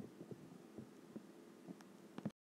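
Near silence: faint room tone with a low steady hum and a few soft clicks.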